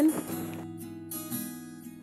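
Background music: acoustic guitar playing.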